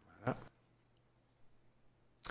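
Faint computer mouse clicks, a quick pair about one and a half seconds in, as buttons in a settings dialog are clicked.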